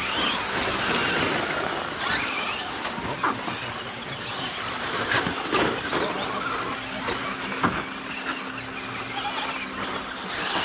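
Electric motors of several Traxxas Slash RC short-course trucks whining as they race on a dirt track, with tyres on dirt. A few sharp knocks come through along the way.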